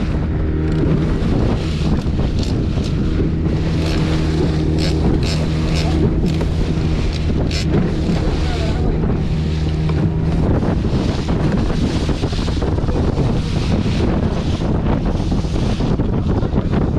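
Small fishing boat under way at trolling speed: a steady engine drone with water rushing and splashing along the hull and wind buffeting the microphone. The engine's hum fades about ten seconds in while the water and wind noise carry on.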